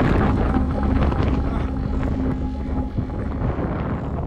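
Wind buffeting the microphone: a loud, dense low rumble, with a faint steady hum underneath.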